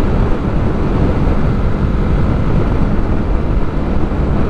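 Yamaha YB125SP's 125 cc single-cylinder engine running steadily at cruising speed, mixed with heavy wind and road noise on the bike-mounted microphone.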